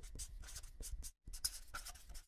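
A pen scratching as it writes, in quick short strokes: one run of strokes, a brief pause a little past halfway, then a second run.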